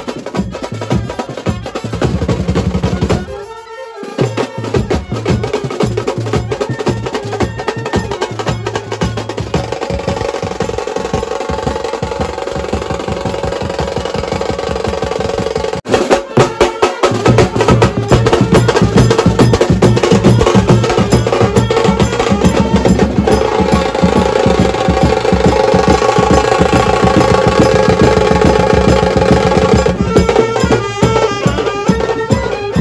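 A brass band's drum section, snare drums and a bass drum beaten with sticks in a fast, driving rhythm, with a short drop-out about three seconds in. About sixteen seconds in the sound becomes louder, and saxophones and trumpets play held notes over the drumming.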